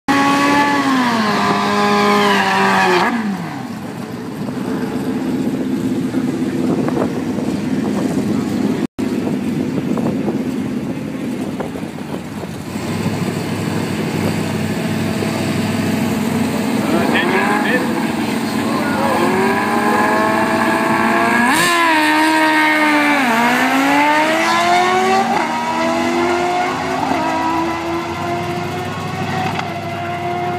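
Drag race car's engine revving and then running steadily at the starting line, then launching off the footbrake about twenty seconds in, its pitch climbing several times with drops between for gear changes as it pulls away down the strip.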